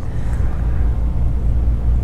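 A steady low rumble with no speech over it.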